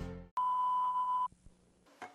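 The music cuts off, then one steady electronic beep at a single pitch sounds for about a second and stops abruptly.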